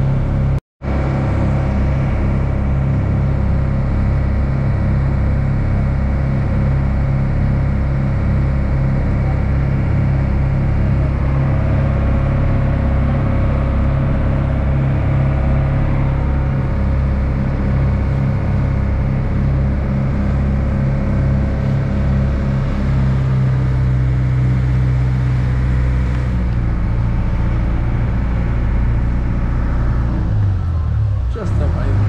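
Passenger ferry's engine running steadily under way, with water rushing along the hull; there is a brief dropout less than a second in, and the engine note shifts a little over twenty seconds in.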